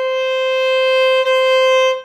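Violin bowing one long, steady C natural on the A string, stopped with the second finger in the low position right beside the first finger (a "low two"). The note dips briefly just past halfway, then carries on at the same pitch.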